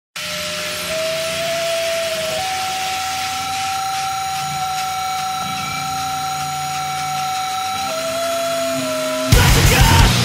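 Amplifier feedback intro: a held whining tone over a hiss that steps up in pitch and later back down. About nine seconds in, a powerviolence band crashes in at full volume with distorted guitars and drums.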